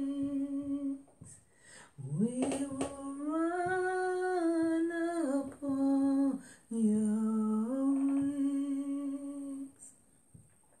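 One voice humming a slow, wordless melody in long held notes. It breaks off for about a second near the start, then glides up to its highest notes in the middle and steps back down.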